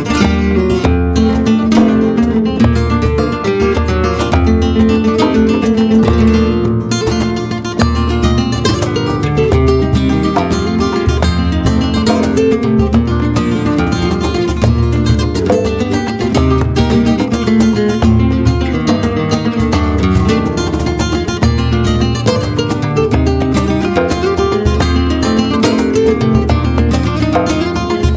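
Flamenco guitar playing a guajira, a run of fast plucked and strummed notes, over hand-drum percussion beating a steady low pulse.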